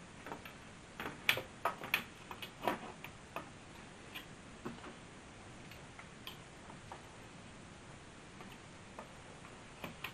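Irregular light clicks and taps from a tag board and a hand tool knocking against a metal radio-receiver chassis as the board is eased into place. The clicks come thickest in the first few seconds, then a few scattered ones.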